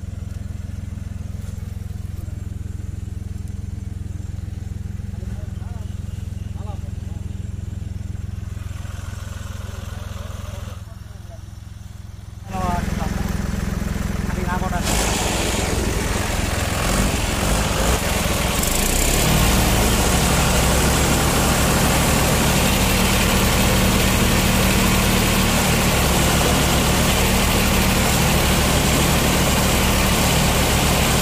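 Tractor diesel engine running steadily at low revs for the first ten seconds or so. About twelve seconds in, the sound becomes much louder, with the engine working under load and a broad rushing noise over it. It steps up again a few seconds later as the tractors strain on a tow rope to pull a tractor out of mud.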